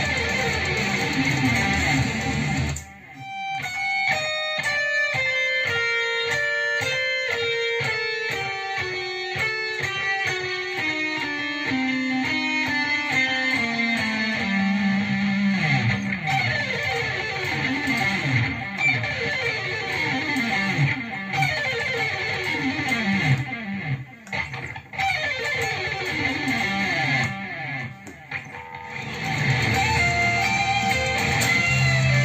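Electric guitar played solo, picking a lick. After a dense opening, single notes step steadily down in pitch, then give way to a string of quick descending runs.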